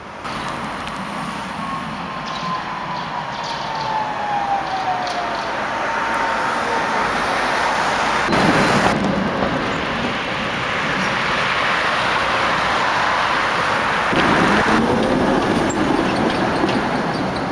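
Tatra trams running at close range, with electric traction motors whining and wheels rumbling on the rails. A whine slides slowly down in pitch over the first several seconds, the noise grows loudest about eight seconds in, and a short rising whine comes near the end as a tram pulls away.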